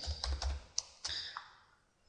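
A few light computer keyboard keystrokes in the first second and a half, typing a brush-size value of 500 into a field.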